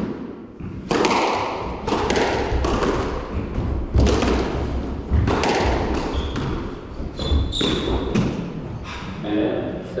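A squash rally: the ball struck by racquets and hitting the court walls about once a second, each impact sharp and echoing around the court.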